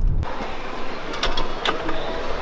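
Car-cabin road rumble that cuts off abruptly a quarter-second in, giving way to the hubbub of a busy indoor store: a steady wash of distant voices with scattered clicks and clatter.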